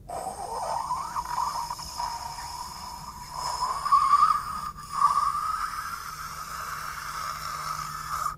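A long hissing whoosh whose pitch creeps slowly upward for about eight seconds, then cuts off suddenly.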